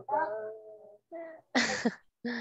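A child's drawn-out, wordless whining vocal sound, hesitant and rising and falling in pitch, then a shorter one and a brief breathy burst near the end.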